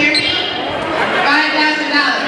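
Basketball being dribbled on a hardwood gym court, with voices calling out over a crowd in a large, echoing hall, including two drawn-out calls.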